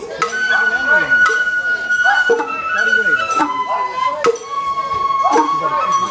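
Sawara-bayashi festival music: shinobue bamboo flutes playing long held high notes over drum strikes that fall about once a second, with voices mixed in underneath.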